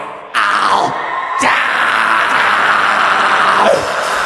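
Rock concert audience cheering and screaming, with single shouts rising above the crowd, coming in suddenly just after the start and holding loud until near the end.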